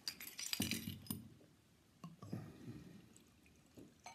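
A few light metallic clinks against glass as a beer bottle is uncapped with a metal bottle opener, then, in the second half, a faint pour of stout from the bottle into a glass.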